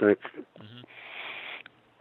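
A man's end of a spoken word, then one audible breath drawn in, a soft hiss lasting under a second, in a pause between words.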